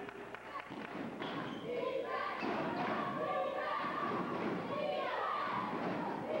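Basketball thudding on a gym's hardwood floor during a game, with indistinct shouting from players and spectators that grows louder about two seconds in, echoing in the gym.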